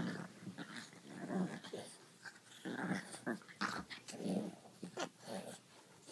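A French bulldog and a griffon play-fighting, growling in a string of short rough bursts as they grapple mouth to mouth, with a few sharp clicks between the growls.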